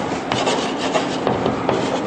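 Chalk writing on a chalkboard: a run of short scratching strokes as a word is written out.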